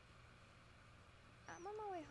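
Near silence with a faint steady low hum, then about one and a half seconds in a person's voice starts on a long, gliding vowel as the reading of a message begins.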